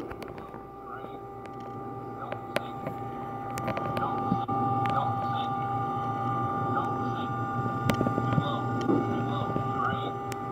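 Cockpit voice recorder audio from a C-5 Galaxy on a failing approach: a steady cockpit hum with two steady tones running through it and occasional clicks, growing gradually louder.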